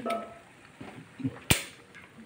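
A single sharp metallic click from kitchen tongs about a second and a half in, dying away quickly.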